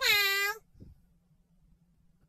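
Domestic cat meowing once: a single short, clear call of well under a second at the very start, dipping slightly in pitch as it ends.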